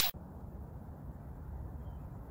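A whoosh from the intro cuts off right at the start, followed by faint, steady low outdoor background rumble.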